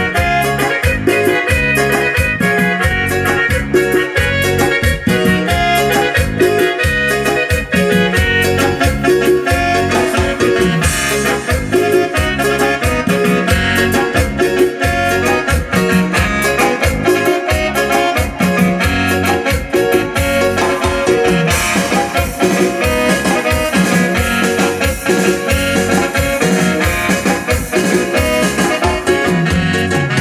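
A band plays a medley of chilenas, loud and continuous with a steady dance beat and a keyboard prominent.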